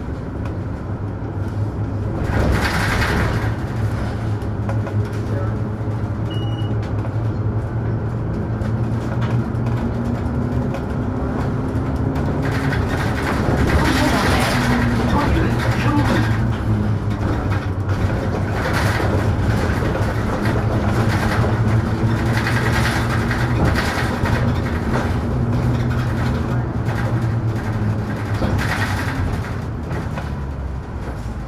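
Inside a Mercedes-Benz Citaro G articulated city bus under way: its engine runs steadily with a low hum, its note drifting up and down as the bus speeds up and slows. Several louder rushing surges of a second or more come and go.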